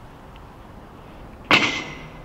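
Low, steady outdoor background noise, then about one and a half seconds in a sudden loud knock that dies away over about half a second, with a thin ringing tone in its tail.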